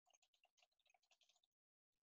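Near silence with very faint computer keyboard keystrokes, a quick irregular run of clicks that stops about a second and a half in, followed by dead silence.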